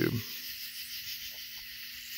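A man's voice trails off at the start, leaving a steady high hiss with a faint low hum beneath it.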